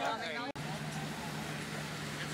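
A boat under way: a steady low engine hum with an even wash of water and wind noise, starting abruptly about half a second in after a man's brief "yeah".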